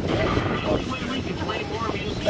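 Indistinct voices of people on an open boat deck over a steady low rumble of boat and wind noise.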